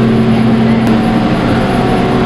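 Chairlift terminal machinery running with a loud, steady hum made of several constant tones, heard as the chair passes through the station.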